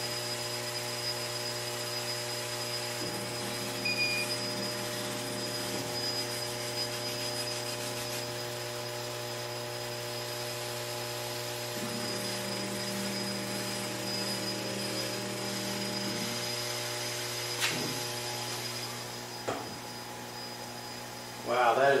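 Steady hum of an OMTech CO2 laser engraver powered on, its fans and pumps running with several steady tones. Near the end there is a click and a knock as the lid is lowered, and the hum is a little quieter after that.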